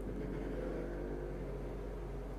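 A steady low mechanical drone, like a motor running in the background, holding level with a faint low hum.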